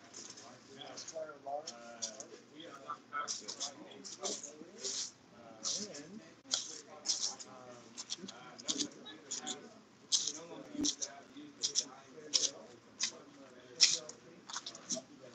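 Indistinct background talk from several people in a room, with short scratchy, hissy sounds at irregular intervals.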